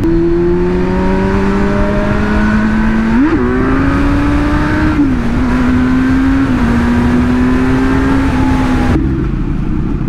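Motorcycle engine running under way, its note climbing slowly, with a quick rise and fall about three seconds in and two drops in pitch midway, with wind rumble on the microphone.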